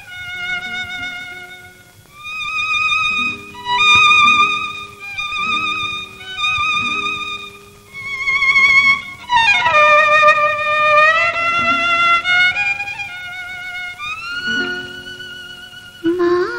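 Solo violin playing a slow, wavering melody with vibrato on the held notes and a long downward slide about halfway through. Softer low accompanying notes sound underneath.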